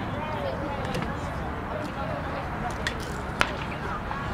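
Steady outdoor background noise at a track meet with faint, distant voices, and a single sharp click a little after three seconds in.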